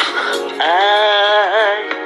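A pop song: a singing voice holds one long note over the backing music, starting about half a second in, with a quick wobble in pitch near the end.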